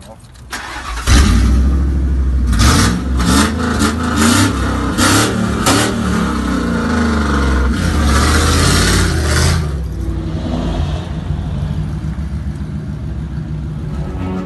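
Full-size van engine, its exhaust open where the catalytic converter was sawn out, starting up about a second in and then being revved several times with a loud, raw exhaust note. The van pulls away and the sound eases off somewhat after about ten seconds.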